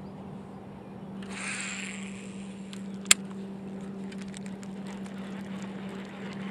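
A fishing cast and retrieve: line hisses off the reel for under a second about a second in, and a single sharp click comes near the halfway point. Faint small ticks of the reel being wound follow, all over a steady low hum.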